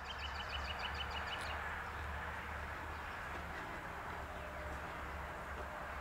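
Faint outdoor background of a steady low rumble and hiss. In the first second and a half a small bird gives a fast trill of short, high, evenly repeated notes.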